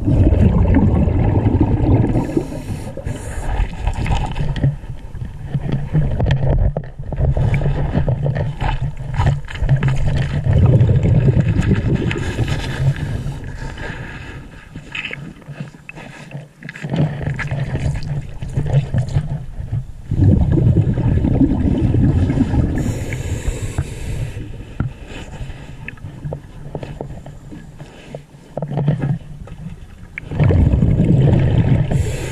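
Underwater scuba diver's breathing through a regulator: long rumbling bursts of exhaled bubbles that come and go, with short hisses of inhalation in between.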